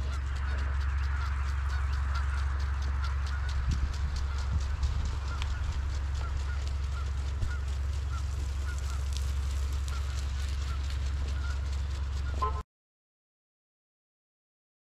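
Distant birds calling repeatedly, short calls about once a second, over a steady low rumble; everything cuts off suddenly near the end.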